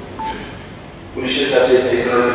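A short single electronic beep about a quarter second in, during a pause in a man's speech; the man's voice resumes a little over a second in.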